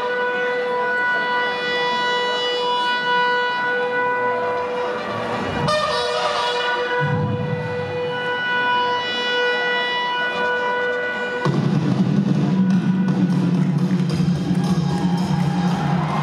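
A long, steady note held at one pitch over the loudspeakers for about five seconds, a short break, then held again: a BSF soldier's drawn-out ceremonial shout into the microphone. About eleven seconds in a much louder crowd roar starts.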